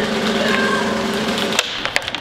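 Snare drum roll, cut off abruptly about one and a half seconds in, followed by a few sharp clicks.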